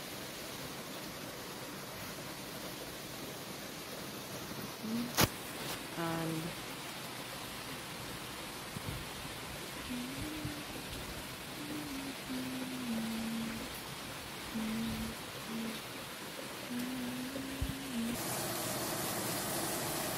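Steady rain hiss, getting louder near the end. Over it comes a low tune of short held notes, and a sharp click sounds about five seconds in.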